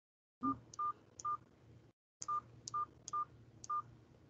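Touch-tone keypad beeps from a Samsung smartphone as digits are keyed into a conference-call dial-in: seven short beeps in two runs, three and then four, each with a small click.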